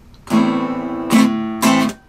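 Acoustic guitar strummed in a reggae-style pattern: a chord a moment in, then two more strokes close together, the last one choked off suddenly by a mute.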